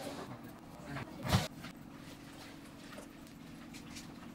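A single short knock about a second and a half in as a takoyaki ball is set down on a ceramic serving plate, over a steady low hum.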